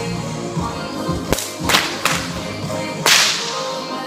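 Two 6-foot bullwhips, one in each hand, cracking: four sharp cracks starting about a second in, the last and loudest about three seconds in, with a short echo after it.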